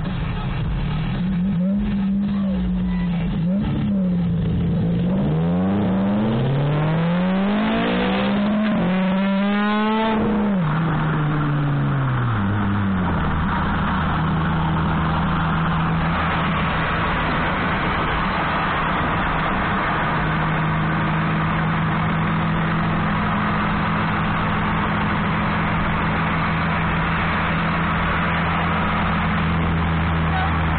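Car engine revved a few times while stopped, then accelerating hard with its pitch climbing steeply over several seconds. About ten seconds in the throttle lifts and the pitch falls, settling into a steady cruising note with road noise.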